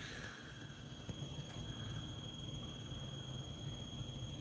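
Quiet background: a steady high-pitched whine, with a fainter one above it, over a low hum and hiss.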